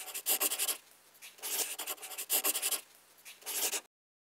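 Pen scratching across paper in four quick strokes, as a signature is scrawled, stopping abruptly near the end.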